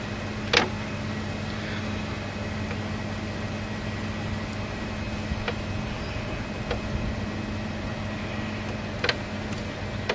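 Steady mechanical hum with several held tones. A few sharp ticks sound over it: a loud one about half a second in, two fainter ones in the middle and another near the end.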